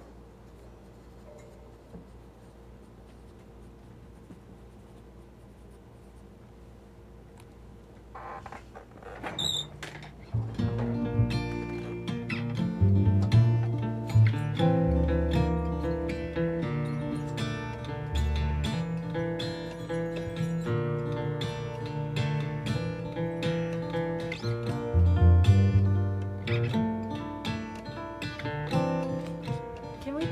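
Low, quiet room sound for the first eight seconds or so, then a short high squeak. From about ten seconds in, an acoustic guitar is played, its plucked notes ringing over deep bass notes.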